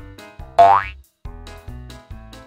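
Bouncy children's background music with a steady beat of about two pulses a second. About half a second in, a loud rising whistle-like cartoon sound effect sweeps upward, the music drops out for a moment, then it picks up again.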